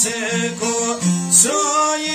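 Albanian folk music, led by a plucked string instrument playing a melody.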